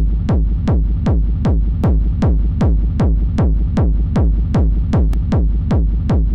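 Distorted hardstyle hall kick, a gated kick drum with heavy reverb, looping at about two and a half hits a second. Each hit drops quickly in pitch into a thick low rumble. It is being played through FL Studio's limiter.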